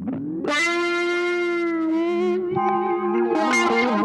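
Background music led by long, held guitar notes with an electric, effects-treated tone, starting about half a second in.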